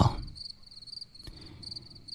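Crickets chirping steadily in short, rapid pulsed trills, a steady background bed.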